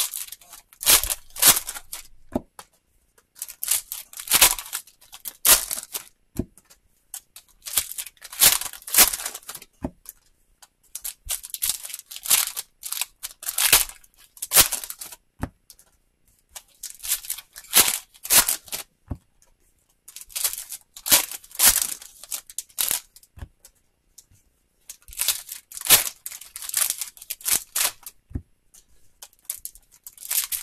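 Foil wrappers of football trading-card packs being torn open and crinkled by hand, in bunches of sharp rustling every few seconds with short pauses between.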